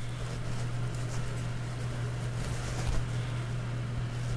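A steady low hum with faint clicks and rustles of a dropper post's control cable being handled and pulled taut at its handlebar lever.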